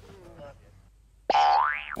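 A comic sound effect: a loud pitched tone, rich in overtones, that starts suddenly a little past halfway and slides steeply upward in pitch for about half a second.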